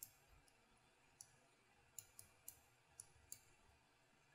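Faint computer mouse clicks, about eight at irregular spacing, over near-silent room tone.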